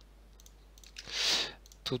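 A few faint mouse clicks over quiet room tone, then a loud breath close to the microphone about a second in, just before speech.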